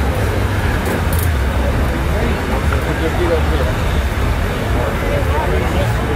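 A steady low rumble from race vehicles idling at the far starting line while they are staged, with distant crowd chatter.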